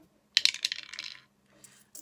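Pound coins clinking together as they are handled and shuffled in the hands, a quick run of sharp metallic clicks lasting about a second.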